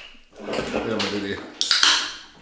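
A brief, sharp clink and clatter of tableware near the end, over a few spoken words.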